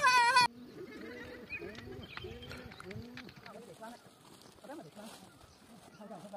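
Music cuts off abruptly about half a second in. It is followed by a much quieter run of short, voice-like calls with arching pitch, thinning out after about three seconds.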